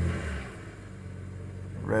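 BMW N52 straight-six idling steadily, heard from inside the car's cabin, with a brief low swell in the first half-second. The engine is running with its exhaust camshaft timing freshly reset and the VANOS exhaust position now changing.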